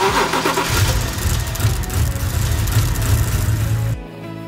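Car engine starting: a short noisy burst as it catches, then running with a deep, steady rumble that cuts off suddenly at the end.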